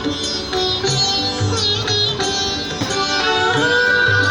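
Instrumental background music led by plucked string notes, with sliding pitches and a low pulsing bass line.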